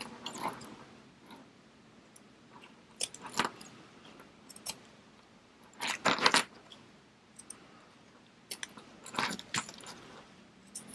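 Scissors snipping through zipper tape and fabric tabs in four short clusters of cuts about three seconds apart, the loudest about six seconds in, with light metallic clinks as the zippers are handled.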